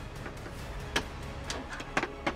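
Light metal clicks and knocks from the HP Z840 workstation's steel side cover being handled and set back onto the case: three sharp clicks, the loudest about a second in, over faint background music.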